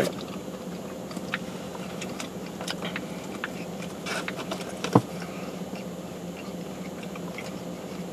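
Biting into and chewing a sandwich: soft wet mouth sounds and scattered small clicks, with one sharper click about five seconds in. A faint steady hum of the car cabin lies underneath.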